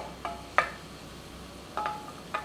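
Wooden spatula stirring mushrooms in a nonstick frying pan: a few sharp scrapes and knocks against the pan, each with a brief ringing tone, over a faint sizzle of mushrooms cooking in oil.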